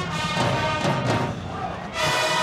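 Marching band playing: brass with drums and mallet percussion. The music softens briefly near the end, then comes back in full.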